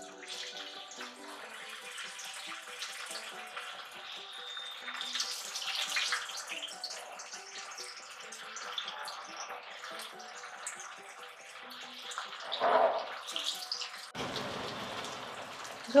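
Sabudana vadas deep-frying in very hot oil in a kadai: a steady sizzling, bubbling crackle.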